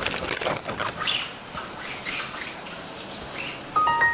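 Rustling and small knocks from a nylon camera bag being handled, busiest in the first second or so and then fading to quiet. Just before the end comes a short electronic chime, like a Windows XP dialog sound.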